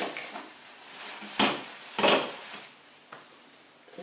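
A thin plastic sheet crinkling as it is picked up and shaken out, with two sharp crackles about a second and a half and two seconds in.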